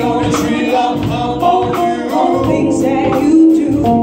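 Live band playing a song with singing over keyboard, guitar, bass and drums, with a steady beat.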